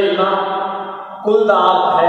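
A voice holding long, steady sung notes. The first note breaks off about a second and a quarter in, and a second held note follows at once.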